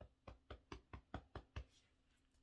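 Fingertips tapping on the top of the head in EFT tapping: faint, quick, even taps, about four or five a second, stopping shortly before the end.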